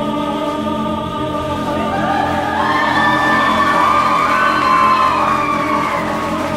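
A man singing into a handheld microphone over a small live band with piano: a held note, then his voice climbs about two seconds in to a long, loud high note that peaks about five seconds in.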